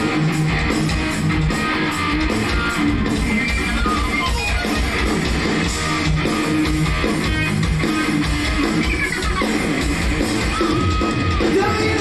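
Hard rock band playing live, electric guitar to the fore over drums, with a falling pitch slide about nine seconds in.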